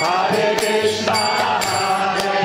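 Kirtan: a man leading a devotional chant into a microphone over the sustained drone of a Bina harmonium, with small hand cymbals ringing on a steady beat.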